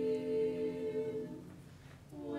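A women's a cappella quartet holding a sustained chord, which fades away about two-thirds of the way through, leaving a brief near-quiet pause.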